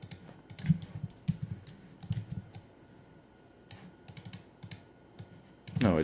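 Typing on a computer keyboard: runs of quick keystrokes in the first two seconds, a short lull, then a few more scattered key presses.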